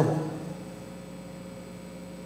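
A pause in a man's talk: steady room tone, a faint even hiss with a low electrical-sounding hum and no other events. The last word of his speech trails off just at the start.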